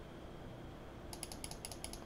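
Light clicking at a computer: a quick run of about nine sharp clicks in the last second, as the trading software is worked to bring up the next stock chart.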